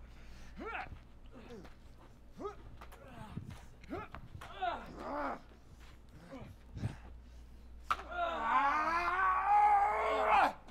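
Fight-scene footage audio: short grunts and exclamations from the actors, then a sharp knock about eight seconds in. A long, loud yell follows and runs to the end.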